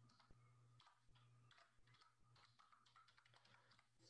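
Near silence with faint, irregular computer keyboard keystrokes, as login details are typed, over a faint steady low hum.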